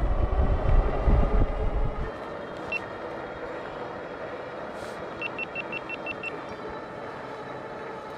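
Wind buffeting the microphone of a fat-tyre electric bike rider for about the first two seconds, then a steady riding noise of the fat tyres rolling on asphalt. A single short high beep comes a little before the middle, and about two seconds later a quick run of eight short high beeps.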